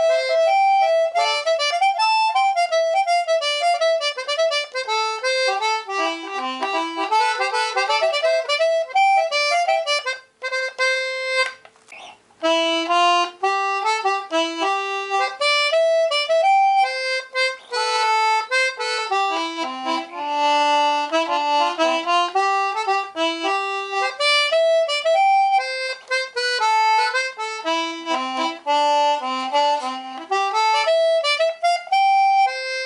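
Hohner D40 Anglo concertina in C/G, 20 buttons with single reeds, playing a tune of quick-moving melody notes over chords, with a couple of short breaks about ten to twelve seconds in.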